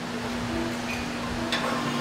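Background music in a gym over a steady hum, with a faint tick about one and a half seconds in.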